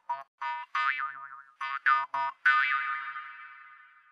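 A short electronic jingle: a quick run of bright, short notes, a couple of them swooping up and wavering in pitch, ending on a longer note that fades away near the end.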